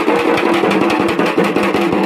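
Hand-held leather frame drums beaten with sticks in a fast, dense rhythm, with a held pitched drone sounding alongside the strokes.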